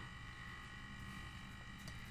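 Faint room tone with a steady high electrical whine and hum; a few faint clicks come near the end.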